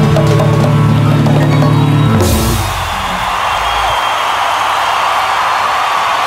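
A live rock band with drums, bass and percussion playing the last bars of a song and stopping together about two seconds in, a low bass note ringing on briefly; then a crowd cheering and applauding.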